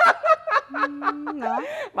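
Talk-show speech with a short chuckle at the start, followed by one long, held vowel and a breathy sound near the end.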